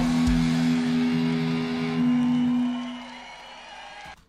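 The last held chord of a live rock band's electric guitar and bass, ringing on and then fading away over the second half.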